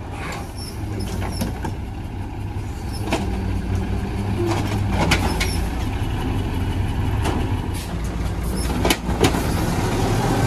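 Mack LE natural-gas refuse truck running steadily, its engine coming up from about three seconds in as the Amrep Octo automated side-loader arm works. Sharp metallic clanks of the arm and cart come around three and five seconds in and twice just before the end.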